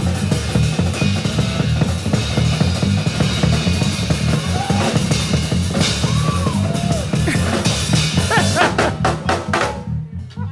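A small drum kit (snare, tom, bass drum, hi-hat and two cymbals) played fast and hard in a dense run of strokes and fills, over a bass guitar line.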